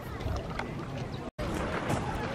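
Wind rumbling on the microphone with faint voices, broken by a split-second dropout of all sound a little past a second in.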